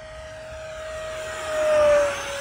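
64 mm electric ducted fan of a foam RC jet whining as the model flies past. The sound grows louder to a peak near the end, and its pitch dips slightly as the plane passes.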